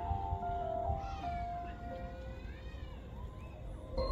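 Marching band's held brass chord fading out about a second and a half in, followed by high, smoothly gliding tones that rise and fall in pitch.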